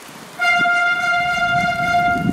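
A vehicle horn giving one long, steady blast that starts about half a second in and holds to the end.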